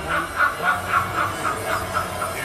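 A man laughing in rapid, even pulses, about four a second: a film character's forced cackle on a trailer soundtrack, played through the room's speakers.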